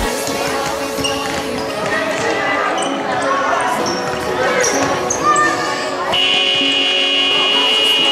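Indoor youth football match in a sports hall: the ball thudding on the hall floor amid children's and spectators' shouts, and a long, steady referee's whistle blast starting about six seconds in and lasting about two seconds.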